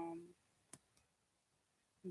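A woman's brief 'um', then a single sharp click just under a second in and a fainter one soon after, with near silence around them.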